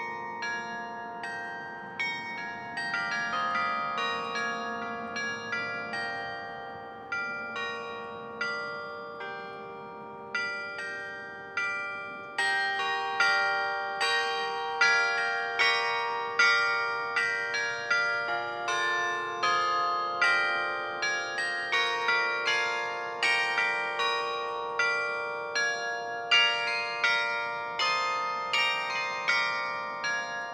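Carillon playing a melody: struck bell notes one after another, each ringing on and fading, often overlapping into chords. The strikes become louder about halfway through.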